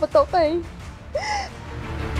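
A young woman crying: a few tearful, wavering words at the start, then a single sobbing gasp a little after a second in, over low background music.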